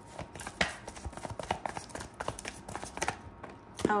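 A deck of tarot cards being shuffled and handled by hand: an irregular run of small, sharp clicks and taps.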